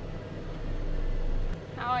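Low, steady drone of a John Deere combine harvester's engine heard from inside its cab while it drives along the road. The deepest rumble swells slightly, then cuts off suddenly with a click about one and a half seconds in.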